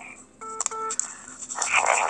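Two short electronic phone beeps, one right after the other, about half a second in. They are followed near the end by a breathy, speech-like sound.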